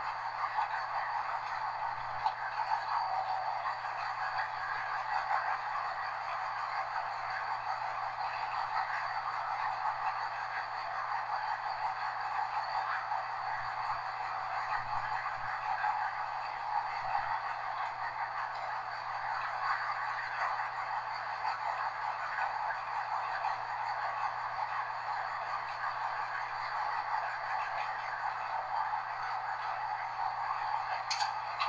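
Steady running noise of a Class 201 'Hastings' diesel-electric multiple unit under way, heard from inside its rear cab: an even mix of train noise with a steady low hum underneath and a few faint knocks.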